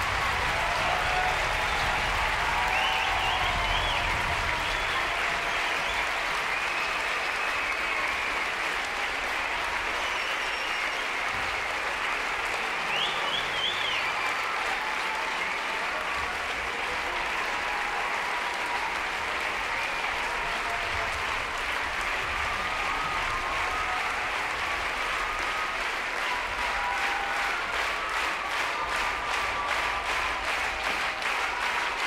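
Sustained applause from a large theatre audience at a curtain call, steady throughout, with a few voices calling out over it.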